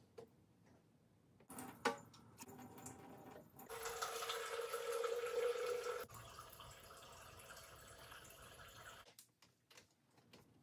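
Water running from a kitchen faucet into the sink for about two seconds, starting about four seconds in, then a fainter trickle until near the end; a few clicks and a knock come before it.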